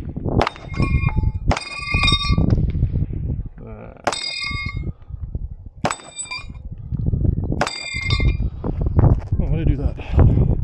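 Pistol shots, about five of them, each followed at once by the high ringing clang of a steel target being hit.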